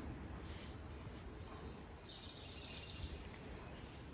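Quiet outdoor background of a wooded yard, with faint high chirping about two seconds in.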